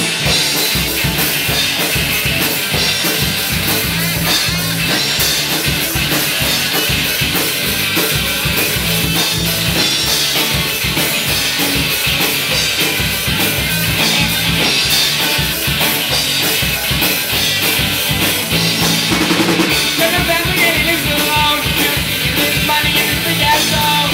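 Live punk-rock band playing loudly: distorted electric guitars over a steady, driving drum-kit beat, with the snare and bass drum prominent.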